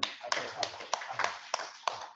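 A small group applauding, with sharp single claps standing out about three times a second.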